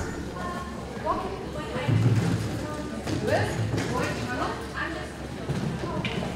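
Short calls from a voice rising and breaking off every second or so, over footfalls on a rubber-matted floor.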